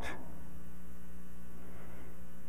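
Steady electrical mains hum in the sound system's audio feed, a low, even buzz of several fixed tones with nothing else over it.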